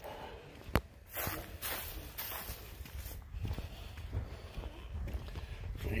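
Footsteps on a concrete driveway, with one sharp click near the start.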